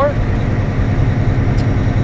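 Semi-truck's diesel engine running and road noise heard inside the cab while driving slowly, a steady low rumble.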